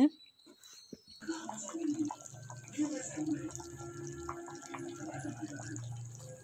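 Rice, water and masala boiling hard in an aluminium pot, a steady bubbling that starts about a second in.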